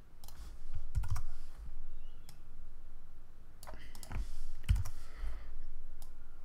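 Computer keyboard and mouse clicks while a value is entered in software: a few scattered clicks, in small bunches about a second in and again around four seconds.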